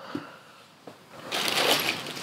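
A plastic packet of small metal hardware being picked up and handled, the plastic crinkling and rustling from a little past halfway through, after a couple of faint knocks.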